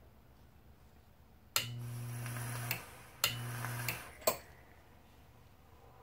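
A 24 V AC relay on a mains-powered home-built e-cigarette mod clicking in and out as it is fired: two presses of about a second each, each with a steady low electrical hum and a hiss from the firing atomizer while the relay is held, then one quick extra click.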